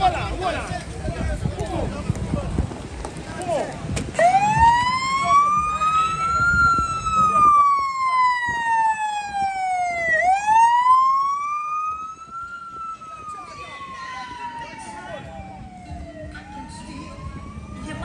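Police car siren wailing, starting about four seconds in after crowd chatter. Its pitch rises slowly, then falls slowly, in cycles of about six seconds. The siren is somewhat quieter after about twelve seconds.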